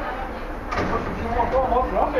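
A faint voice of someone else in the background, wavering in pitch in the second half, over a steady rushing noise.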